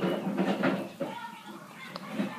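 Hands digging into and pressing loose compost in a planting pot, a faint crumbly scratching and rustling that dies down in the second half, with a brief spoken word at the start.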